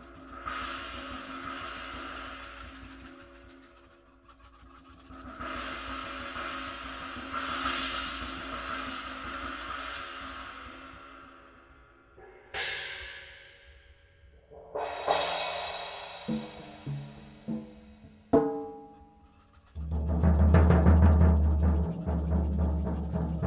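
Mallet rolls on V-Classic cymbals, swelling up and fading away twice. Then two single strikes on a cymbal ring out with long decays, followed by a few short pitched drum hits. Near the end comes a loud, low mallet roll on a floor tom.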